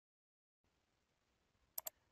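Near silence: faint microphone hiss, with two quick small clicks close together near the end.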